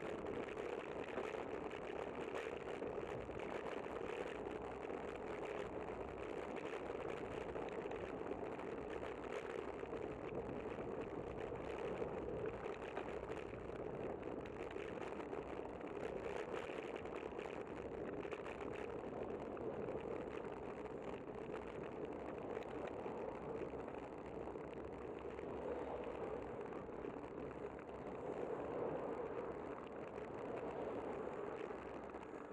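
Steady road noise picked up by a camera on a moving bicycle, with car traffic passing in the next lane.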